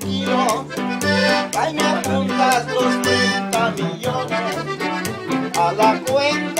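Live norteño trio playing: button-box style accordion carrying the melody over a twelve-string bajo sexto and an upright bass with a steady, regular bass line.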